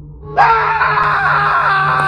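A person screaming: a loud, held scream that starts suddenly about half a second in and wavers in pitch, over a low, steady horror-music drone.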